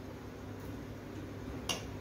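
Quiet kitchen handling as potato filling is spooned into a samosa pastry cone: a low steady hum with one sharp click near the end.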